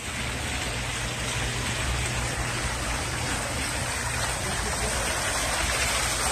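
Water spilling from a two-tiered outdoor fountain into its basin, a steady splashing that grows slowly louder as the fountain is approached.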